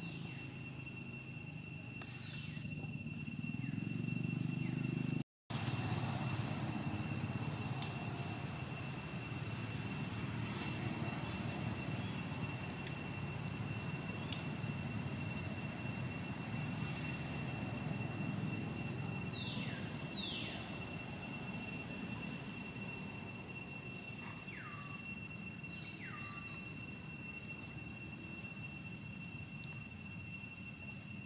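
Outdoor ambience: a steady low rumble under a steady high-pitched whine, with the sound cutting out for a moment about five seconds in. Two short calls falling in pitch come about two-thirds of the way through, and two more follow near the end.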